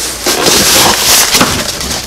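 A cardboard shipping box being torn open by hand: loud ripping and crackling of cardboard and packing tape in several uneven pulls.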